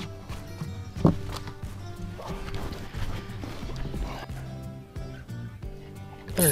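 Background music, with a few irregular knocks and slaps from a crappie flopping on the boat deck, one louder about a second in.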